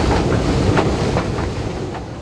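Underground train running: a loud rumble with irregular rattling clicks from the wheels and carriage, starting to fade away near the end.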